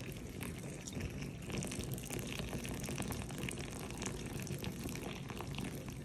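Hot sake poured in a thin, steady stream from a ceramic flask into a glass of toasted pufferfish fins, trickling and splashing with fine crackles, a little louder through the middle.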